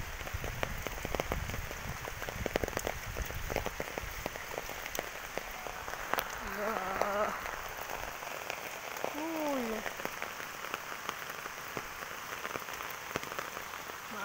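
Typhoon rain falling steadily on leaves and ground, with many small drops ticking close by and a low rumble during the first few seconds.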